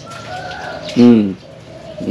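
Caged spotted doves cooing faintly, with a man's short "um" about a second in.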